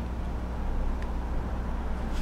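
Leadshine hybrid stepper motor, driven by a CS-D508 closed-loop drive, turning slowly through one revolution: a steady low hum.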